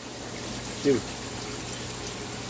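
Steady running and trickling water of a saltwater aquarium's circulation, under a low, steady pump hum.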